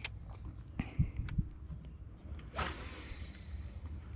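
Rod and reel handling while a small largemouth bass is reeled in: a few sharp clicks about a second in and a short rushing noise about two and a half seconds in, over a steady low rumble of wind on the microphone.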